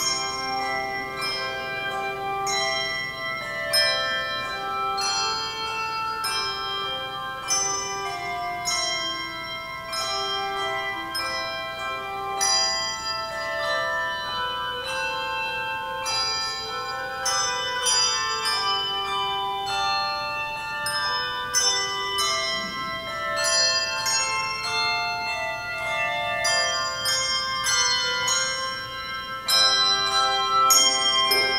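Tuned bells playing a slow melody in chords, each struck note ringing on and overlapping the next.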